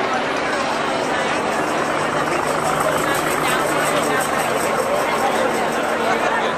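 A street crowd talking all at once: many overlapping voices in a steady babble, with a faint steady low hum underneath from about two seconds in.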